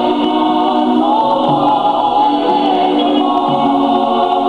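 Choir of family voices singing a Samoan hymn (vi'i) together, with long held notes.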